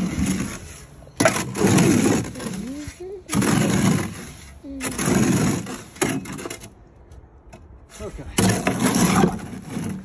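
A shovel scraping and churning through wet cement in a wheelbarrow, in four rough strokes about a second and a half to two seconds apart.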